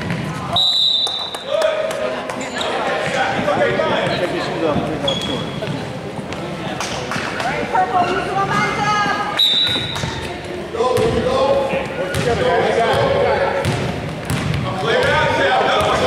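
Basketball dribbling and bouncing on a hardwood gym floor, with sneakers on the court and echoing chatter from spectators and players. A short high-pitched squeal sounds twice, about half a second in and again near the ten-second mark.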